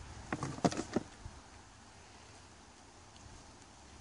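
A few short rustles and crunches in the first second as gloved hands dig through wood-chip mulch and soil, then only a faint outdoor background.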